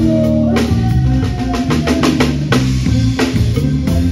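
A drum kit played with a band, its kick and snare hits coming thick and fast over held bass notes and other pitched instruments.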